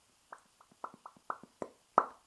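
A quick, irregular run of about eight soft mouth clicks, the last one louder.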